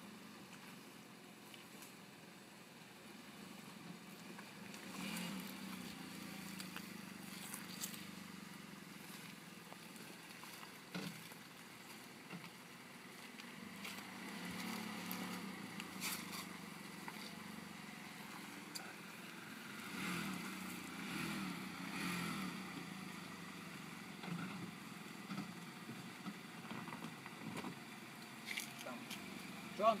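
Nissan X-Trail crossover's engine working at low speed as it crawls over a rocky track, swelling a few times as the throttle is fed in. Scattered sharp knocks and crackles of stones and rock under the tyres.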